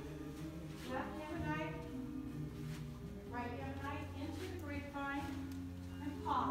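Recorded Israeli folk dance song: a woman singing in Hebrew over steady, sustained low instrumental notes.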